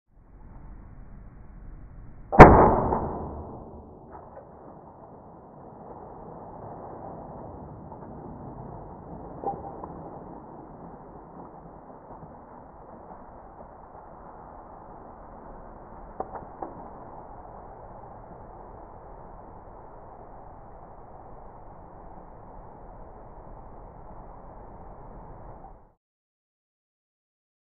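Slowed-down sound of a swing-top bottle of home-brewed ginger beer bursting open: one loud pop about two seconds in that rings off over a second or so. Then a steady low hiss of the highly carbonated beer foaming out, with a few faint clicks.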